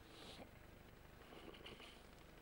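Near silence: faint background noise from the start of a horse race, with a couple of brief, indistinct faint sounds.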